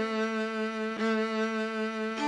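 Solo violin holding a low sustained note, bowed again on the same pitch about a second in.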